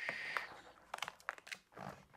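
Hands pressing and rubbing a partly deflated latex balloon flat against a board, a soft hiss at the start followed by light crinkling and scattered small clicks as the last air is squeezed out.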